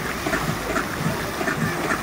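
Water from a tall fountain jet spraying and falling back into the pool, a steady rushing splash.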